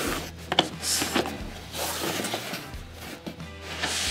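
Background music, with a few sharp clicks of plastic latches being unsnapped about the first second, then the scrape and rub of a foam case lid being lifted off.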